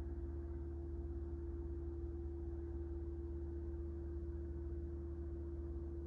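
A steady low hum with one constant higher tone over it, unchanging throughout.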